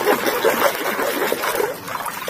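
Water churning and splashing as a muddy plastic toy cement mixer truck is swished and scrubbed under water by hand, an irregular run of splashes that goes on steadily.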